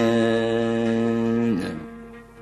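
Male voice holding a long sung note in a Kabyle song, which ends about a second and a half in, leaving quieter instrumental accompaniment.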